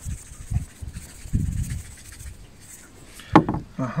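Food being handled on a wooden cutting board: dull low thuds and rubbing, then a sharp knock about three and a half seconds in.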